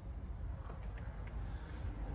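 Quiet background with a low, steady rumble and no distinct events.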